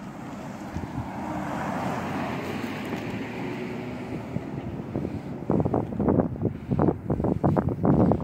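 Wind blowing across the phone's microphone: a steady rushing that swells and fades over the first few seconds, then turns into rough, irregular buffeting gusts several times a second from about halfway through.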